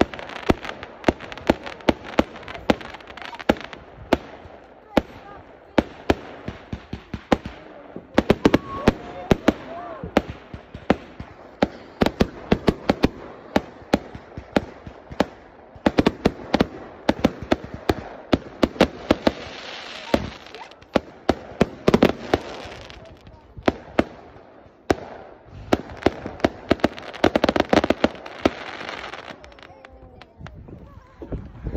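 Aerial fireworks going off: many sharp bangs in quick succession, with denser spells of crackling about two thirds of the way in and near the end.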